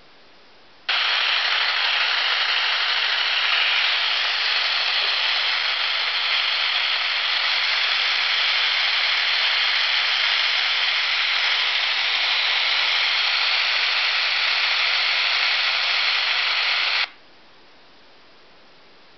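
Loud, steady static hiss from a phone's built-in analog TV tuner, played through its small loudspeaker with no channel received. It starts suddenly about a second in and cuts off suddenly near the end.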